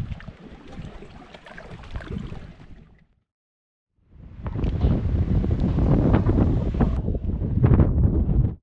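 Wind blowing across the microphone with a low rumble, fading out about three seconds in. After a second of dead silence, a louder wind-buffeted rumble fades back in.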